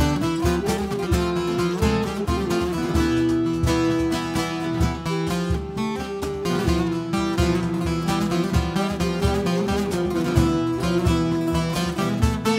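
Instrumental break of a Turkish folk song (türkü): strummed acoustic guitar and bağlama, with a clarinet holding long melody notes over a steady low drum beat.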